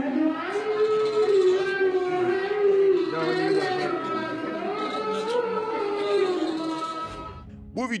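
A man's voice chanting the Islamic call to prayer (adhan) in long, wavering held notes that fade out about seven seconds in.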